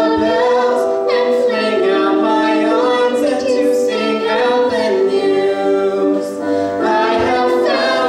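A young man and a young woman singing a slow duet together into microphones, in long held notes.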